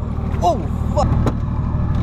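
GQ Nissan Patrol's engine running steadily at low revs, with an even low pulsing throughout.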